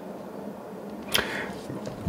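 A sharp mouth click and a short breath drawn in through the mouth about a second in, just before speech resumes, over a faint steady low room hum.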